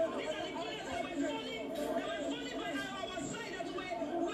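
Speech: a person talking over the chatter of other voices.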